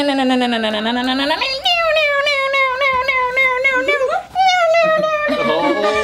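Men vocalizing electric-guitar riffs with their mouths for an air-guitar solo: several long, high wailing notes one after another, each wavering quickly and gliding up and down, with two voices overlapping near the end.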